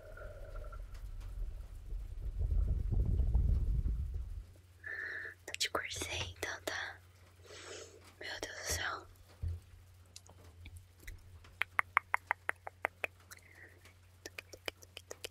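Close-miked ASMR whispering and mouth sounds. The first few seconds hold a low rumble right on the microphone; then come breathy whispered mouth sounds, and near the end a quick run of crisp clicks, about eight a second, like rapid whispered "tuc tuc tuc".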